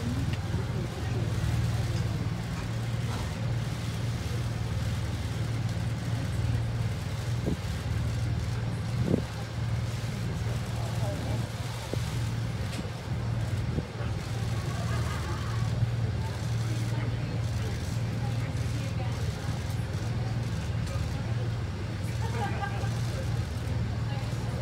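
Steady low hum of an idling vehicle engine, with faint murmured talk over it and a few short knocks.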